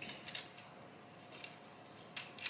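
A few faint, scattered ticks and crinkles from a thin plastic keyboard membrane and its key-switch assembly being handled and peeled apart.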